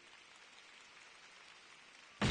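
Near silence: the last held notes of the music fade out at the very start, leaving a faint, even hiss of room tone.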